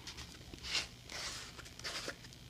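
Screw-top lid being twisted off a plastic jar of embossing paste: faint scraping of the threads in two short bursts.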